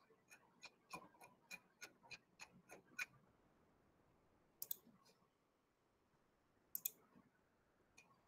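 Near silence broken by faint computer mouse clicks: a quick run of about eight clicks in the first three seconds, then two double clicks, as a PDF is zoomed and scrolled.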